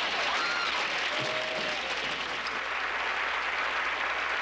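A crowd clapping and applauding steadily, with a few voices calling out over it in the first couple of seconds.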